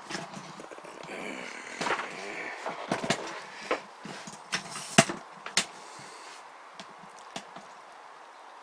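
Handling noise from a camera being moved and set in place by hand: irregular knocks and clicks with faint rustling, the sharpest knock about five seconds in.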